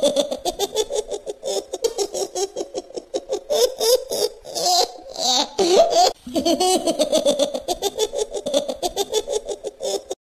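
High-pitched laughter in a long run of quick, rhythmic bursts, pausing briefly twice, then cutting off sharply at the end.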